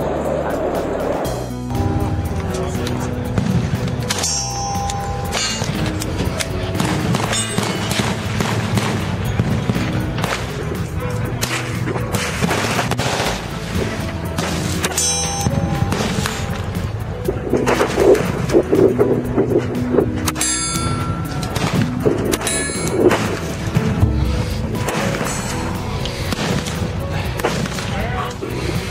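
Pistol shots fired singly at irregular intervals, sharp cracks standing out over steady background music.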